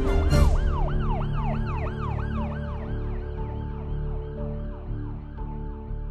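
Emergency siren in a fast yelp, its pitch rising and falling about three times a second and fading out gradually, over a steady musical drone.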